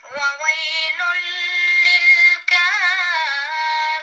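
A recorded Quran recitation playing back: one high voice chanting melodically in long held notes, with a brief break about two and a half seconds in and then a wavering, ornamented note.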